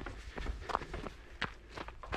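Footsteps of a runner in running shoes, a quick regular series of steps, about three a second.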